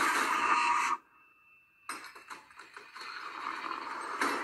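Action-film fight-scene soundtrack played from a computer's speakers and picked up off the room: a loud crashing burst that cuts off suddenly about a second in. It is followed by a near-silent second with a faint high steady tone, then a string of sharp knocks as the sound builds back up.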